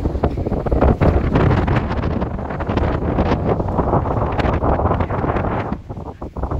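Strong wind buffeting the phone's microphone: a loud, rough rumble that swells and drops with the gusts and eases briefly near the end.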